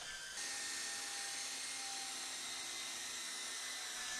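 Battery-powered electric model helicopter running steadily, a motor-and-rotor whine of a few steady tones over a hiss that picks up about half a second in.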